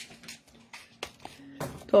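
Faint, scattered light clicks and rustles of small objects being handled, over a low steady hum, with a voice starting near the end.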